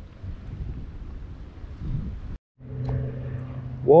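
Wind buffeting the microphone as a low rumble. A little past halfway the sound cuts out completely for a moment, then gives way to a steady low hum.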